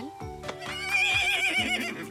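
A cartoon unicorn whinnying: one high, wavering call of about a second and a half, starting about half a second in, over soft background music.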